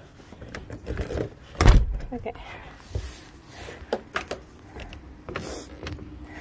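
Keys jangling and a door being opened and shut, with a loud thump about one and a half seconds in and a few lighter knocks and clicks after it.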